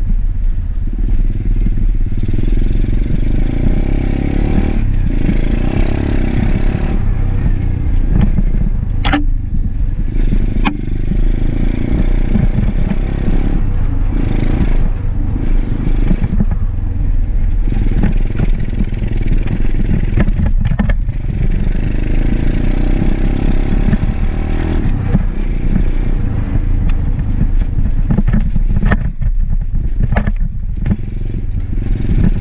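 Dirt bike engine running while the bike is ridden along a trail, its pitch rising and falling with the throttle. Two sharp clicks cut through it about nine and eleven seconds in.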